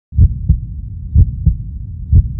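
A heartbeat sound effect: low double thumps, twice, about a second apart, over a low rumble.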